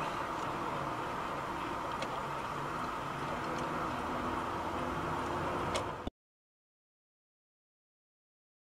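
Steady vehicle running noise with a low hum and a few faint clicks, cutting off abruptly into dead silence about six seconds in.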